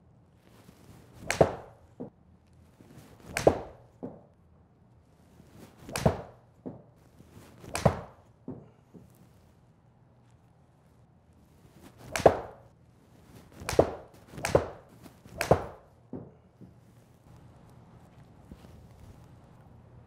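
A 7-iron striking golf balls off a hitting mat into a simulator screen: eight sharp strikes at uneven spacing, several of them followed by a fainter knock.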